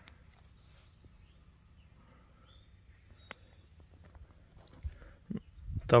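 Near silence: faint outdoor ambience with a thin steady high-pitched tone, one sharp click about three seconds in and a few soft thumps near the end.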